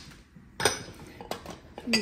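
Ceramic mugs clinking and knocking against each other as they are handled and moved: one sharp clink about half a second in, then a few lighter knocks.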